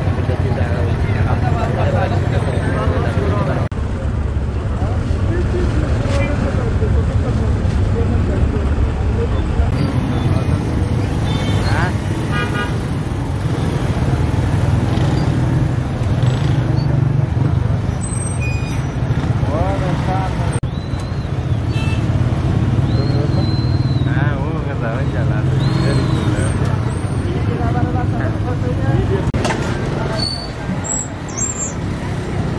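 Busy street-market ambience: steady rumble of passing motor traffic, indistinct voices, and occasional horn toots.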